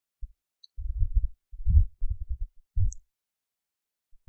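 Low, muffled thumps and rumble in four short patches, with nothing above the deep range and no speech.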